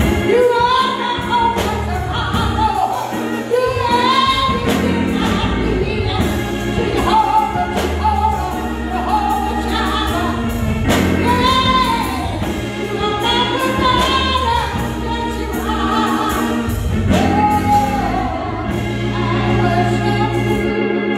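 A woman singing a slow gospel song into a microphone through the church PA, in drawn-out phrases, over sustained organ-style keyboard chords and bass.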